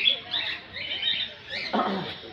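A flock of cockatiels chattering, with many short, high, overlapping chirps, and a brief louder call near the end.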